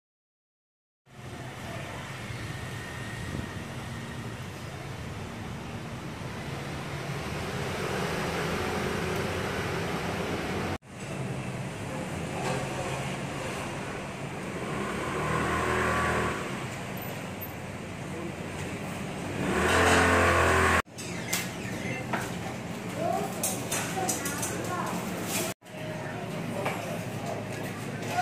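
Street ambience of traffic noise and indistinct voices, in several short stretches joined by abrupt cuts, with a louder swell of noise around twenty seconds in.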